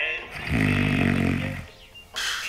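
A man giving one long, deep snore lasting about a second, while dozing in a chair.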